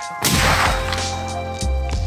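A single muzzleloader shot about a quarter second in, its blast trailing off over about half a second, over background music.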